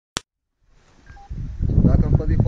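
A single sharp click right at the start, then a moment of silence before the voices of a gathering fade in, with two short faint tones about a second in; by the end a voice is speaking over the crowd noise.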